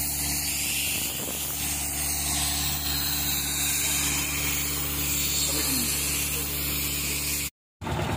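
Air compressor engine running steadily under the hiss of a compressed-air hose blowing dust and grit off the stone road base. The sound cuts out suddenly near the end.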